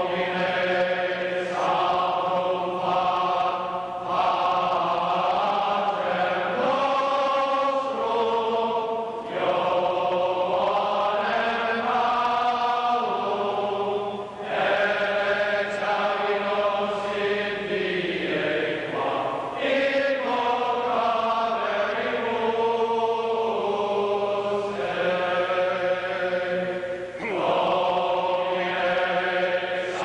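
A large crowd of voices singing together in unison, in phrases of a few seconds with held notes and brief breaths between them.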